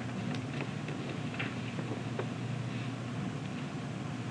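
Faint, short scratches of a pen drawing dashes on paper, over a steady low hum.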